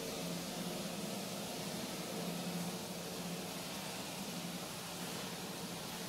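Steady room noise: a constant hiss with a low hum underneath, like a fan or air conditioner running in a small room.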